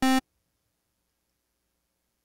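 One short synthesizer note, about a fifth of a second long, from Serum's wavetable oscillator. It is playing a home-made single-cycle waveform as a test of how the waveform sounds. The note stops abruptly, and the rest is near silence.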